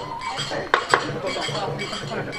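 Kagura accompaniment in a lull between drum phrases: small hand cymbals ringing and clinking, a held flute note that ends just after the start, and two sharp clacks close together about three-quarters of a second in, typical of the gongen lion head snapping its wooden jaws over a child's head for a blessing.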